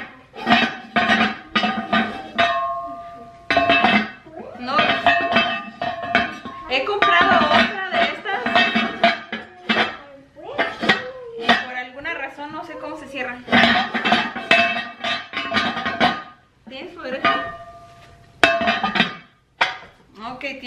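A ceramic pumpkin-shaped serving dish and its lid clinking together again and again. Many of the knocks ring briefly at the same pitch.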